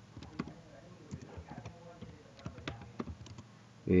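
Typing on a computer keyboard: a dozen or so irregular, light keystrokes.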